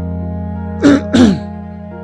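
A person coughs twice in quick succession about a second in, loud over steady background music. It is a cold-weather cough that has caught the throat.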